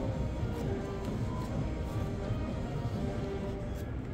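Slot-machine music: short held electronic tones at several pitches over a steady casino din.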